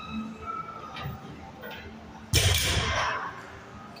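A 165-pound barbell with rubber bumper plates coming down onto the gym floor at the end of a deadlift: one sudden heavy thud a little over two seconds in, dying away within about a second.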